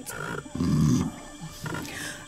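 A low, rough lion-like growl about half a second in, lasting about half a second, followed by a shorter, quieter one near the end.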